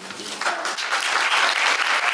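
Audience applauding, starting about half a second in and building to a full, steady round of clapping.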